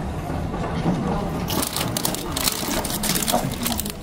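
Dense crackling and crunching noise setting in about a second and a half in, over faint murmur of people's voices.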